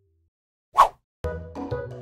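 A single short watery plop a little under a second in, then background music with a steady beat starts abruptly.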